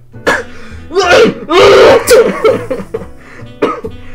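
Loud wordless vocal outbursts from a person, like coughing or yelping, in several short bursts in the first half and one more near the end, over a soft background music bed.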